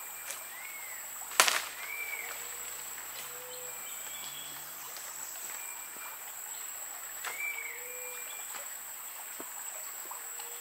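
Rainforest ambience: a steady high-pitched insect drone, with short arched whistled animal calls repeating every few seconds. A single sharp snap about a second and a half in is the loudest sound.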